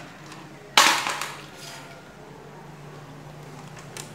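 A sharp clatter of hard plastic parts being handled and knocked together, a little under a second in, fading quickly into faint rustling handling noise.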